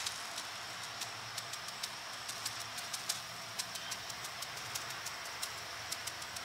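Faint light ticks of a paper seed packet being tapped to shake out carrot seeds, a few times a second and irregular, over a steady low outdoor hiss.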